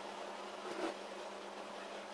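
Steady low background hum, with one brief light knock a little under a second in.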